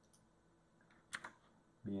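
A few quiet clicks at a computer, one sharper click about a second in, over the quiet of a room; a man's voice starts near the end.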